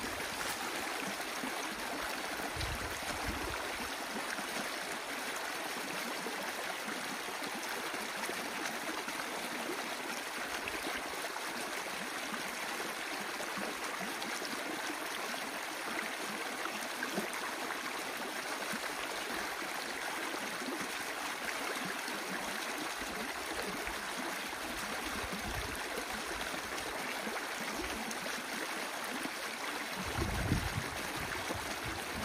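Water rushing steadily through an opened breach in an old beaver dam of sticks and clay, as the pond held behind it drains down the canal.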